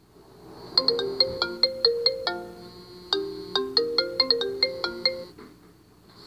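A short electronic melody of quick plucked, marimba-like notes, like a phone ringtone, played as two phrases with a brief break between them.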